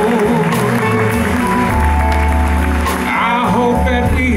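Live soul-jazz band performance: a male voice sings a bending melodic line into a handheld microphone over sustained electric bass notes and light drums.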